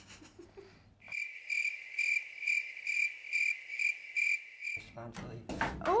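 Chirping crickets sound effect dropped into an awkward silence: a high, even chirp pulsing about twice a second, starting about a second in and lasting about three and a half seconds, with the room sound cut out beneath it.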